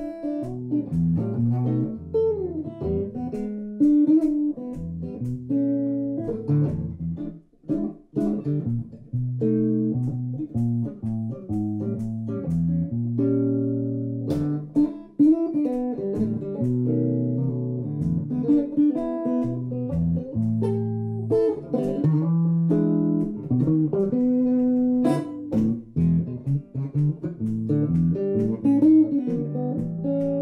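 Ibanez hollow-body jazz guitar played solo, moving between chords and single-note lines, with a brief pause about seven and a half seconds in.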